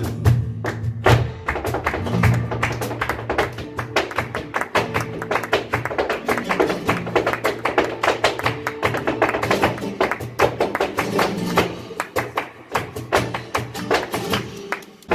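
Flamenco dance music: rapid percussive strikes of footwork and hand-clapping (palmas) over a flamenco guitar playing steadily underneath.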